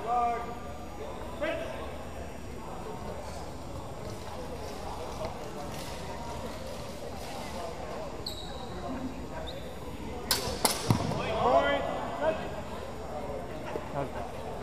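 Longswords clashing in a fencing exchange: two sharp hits about half a second apart, a little after the middle, with a short high ringing tone from the blades a couple of seconds before them.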